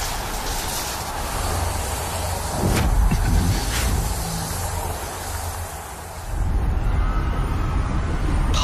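Fight-scene sound effects in an animation: a steady deep rumble under a rushing noise, with two short sharp hits a few seconds in. The sound dips briefly, then the rumble swells back up near the end.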